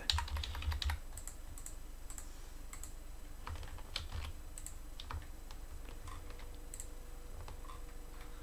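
Irregular light clicks and taps of a computer keyboard and mouse, several close together in the first second and then scattered, over a steady low hum.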